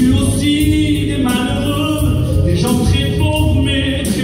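Singing of a French gospel hymn, a voice amplified through a microphone holding long sung notes, with steady music underneath.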